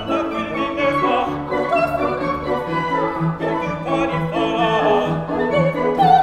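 Operatic duet music: sustained instrumental accompaniment, with a soprano voice singing a wavering, vibrato phrase in the second half.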